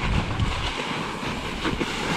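Nukeproof Giga mountain bike rolling down a snowy trail, heard from a handlebar-mounted camera: a steady low rumble of tyres over snow with many small rattling clicks from the bike, and some wind on the microphone.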